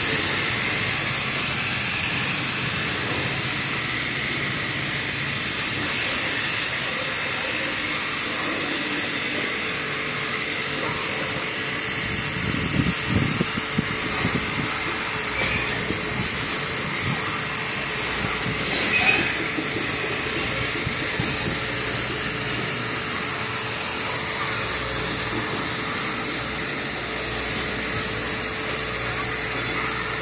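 Pressure washer running steadily, its water spray hissing through an underbody cleaning lance over a constant motor hum, with a few brief louder bursts about halfway through.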